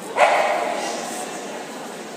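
A dog gives one loud bark just after the start, trailing off over about a second, over a murmur of background chatter.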